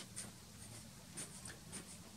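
Faint scratching of a pencil tracing firmly over a photo laid on graphite transfer paper, in short, irregular strokes.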